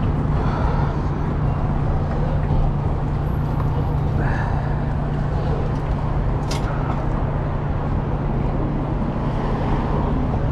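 Busy street traffic with a steady low hum underneath, and faint voices of people nearby. A single sharp click comes about six and a half seconds in.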